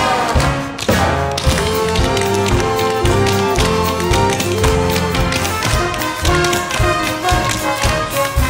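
Tap dancing: quick, rhythmic clusters of tap-shoe strikes on the stage floor over accompanying music.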